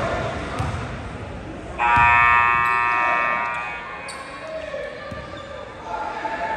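Gym scoreboard buzzer sounding one long, steady electronic blast about two seconds in, lasting roughly two seconds before fading, over the chatter and noise of a basketball gym.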